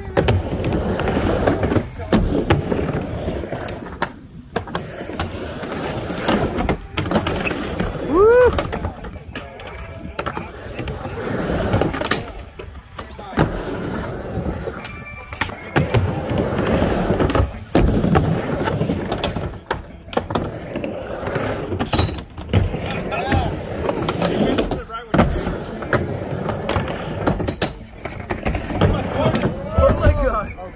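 Skateboards rolling back and forth on a wooden mini ramp: a wheel rumble that swells and fades with each pass, broken by frequent sharp knocks of boards and trucks hitting the ramp and its metal coping.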